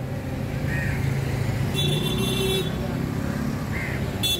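Road traffic going past, a steady low rumble, with a brief vehicle horn toot about two seconds in.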